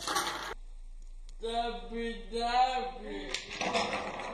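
Wooden Jenga blocks clattering as the tower falls at the start, followed by a young child's long wordless sing-song vocalizing, with blocks shuffling on the table near the end.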